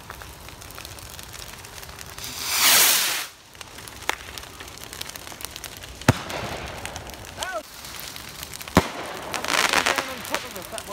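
Firework rockets launching: a loud rushing whoosh about two and a half seconds in, then sharp single bangs about four, six and nine seconds in as rockets burst overhead, and another launch whoosh near the end.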